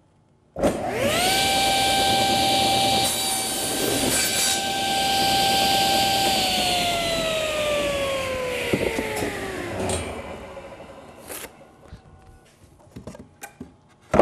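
Table saw switched on about half a second in, its motor whine rising quickly to a steady pitch while the blade crosscuts a pine tongue-and-groove floorboard on a sled. The saw is switched off around six seconds in, and the whine slowly falls as the blade spins down, followed by a few light knocks near the end.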